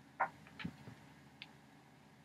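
A few short clicks and light knocks, the sharpest a moment in, a small cluster about half a second later and a faint tick near the middle, as a ceramic coffee mug is picked up and raised for a sip.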